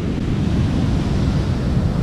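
Strong ocean surf breaking on a sandy beach as a steady rush, with wind rumbling on the microphone.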